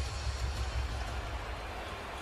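Basketball arena ambience during live play: a steady low rumble under an even hiss of crowd and room noise, with no distinct bounces or whistles.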